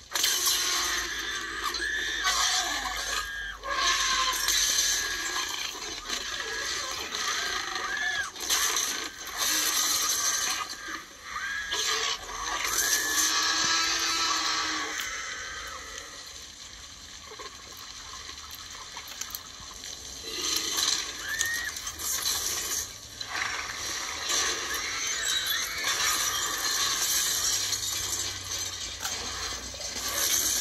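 Film soundtrack of a night rainstorm action scene played through a laptop speaker: steady rain noise with crashes and scraping, and a few short high sliding cries.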